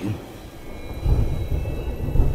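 Low rolling thunder rumble that swells about a second in, part of a thunderstorm ambience.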